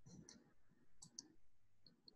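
Near silence on a call line, broken by a few faint, short clicks near the start and again about a second in.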